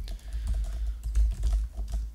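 Rapid typing on a computer keyboard, a quick run of keystroke clicks with a low rumble underneath.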